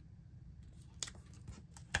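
Faint paper rustling as cut photo prints are slid and pressed into place on a scrapbook page, with a sharp tick about a second in and another just before the end.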